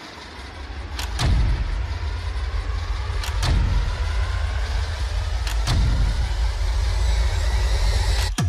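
Trailer sound design: deep booming hits about two seconds apart over a constant low rumble, with a faint tone rising slowly underneath as the tension builds.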